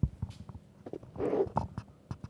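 Soft rustling, knocks and a short breathy whoosh of a person kneeling down, picked up close by a headset microphone, with a sharp thump at the start.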